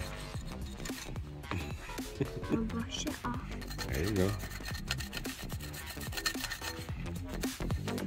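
A small chisel scraping and rasping at a hardened sand block in many short, repeated strokes, over background music.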